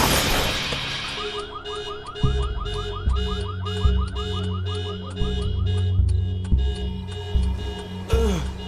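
Fading tail of a car crash, then the wrecked car's alarm sounding in a rapid repeating warble for a few seconds, over a low dramatic music score with heavy bass hits.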